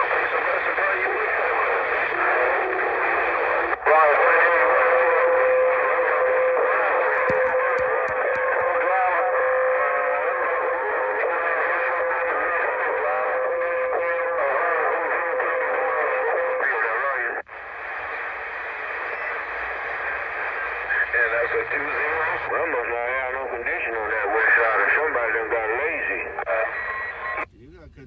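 CB radio receiving AM transmissions through its speaker: thin, narrow-band, indistinct voices that break off and come back about 4 and 17 seconds in. A steady whistle tone runs under the voices for about twelve seconds, and the reception cuts off just before the end.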